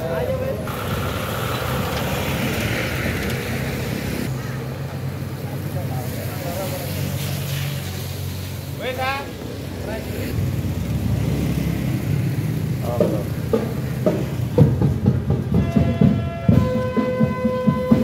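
Outdoor street sound with voices and a vehicle engine running steadily, then drumming starts in the second half, its beats growing louder, joined near the end by steady held instrument tones.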